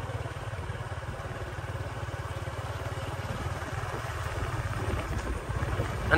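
Small motorbike engine running steadily at low riding speed, a low pulsing hum heard from the rider's seat, with a light hiss of wind and road noise over it.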